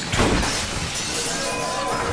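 A large glass window shattering with a crash just after the start, followed by a continuing spray of breaking glass.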